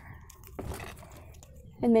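Plastic links of a Wacky Track fidget chain clicking as they are twisted, a brief noise just over half a second in, then a voice speaking near the end.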